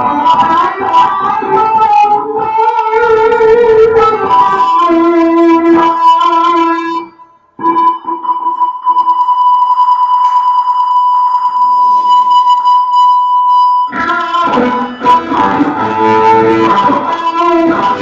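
Electric guitar and drum kit playing live together. About seven seconds in the drums drop out and the guitar holds one high note for about six seconds. The full band comes back in near the end.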